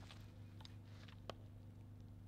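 Near silence, with a few faint ticks and one small click a little over a second in.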